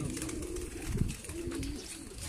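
Domestic pigeons cooing, a low coo about a second and a half in, with a short thump just before it.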